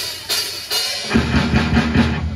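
Live rock band starting a song: the drum kit beats out the intro alone, about three hits a second, then bass and electric guitar come in together about a second in.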